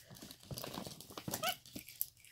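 Plastic gift bag rustling and crinkling in short irregular bursts as a capuchin monkey rummages inside it, with a brief rising squeak about one and a half seconds in.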